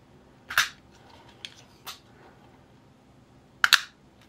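Shirogorov Arctic Overkill folding knife being handled, with a couple of light clicks, then the blade flipped open, giving a sharp double click near the end as it breaks from the detent and snaps out to lock.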